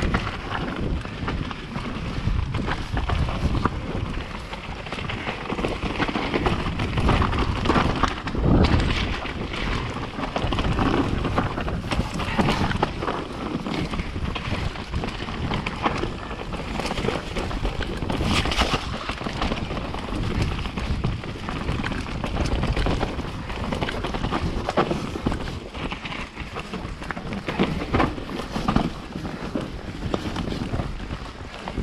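Mountain bike riding fast down a rough dirt forest trail, heard from a camera on the rider: wind buffeting the microphone over tyre noise on dirt and rock, with frequent irregular knocks and rattles from the bike over roots and bumps.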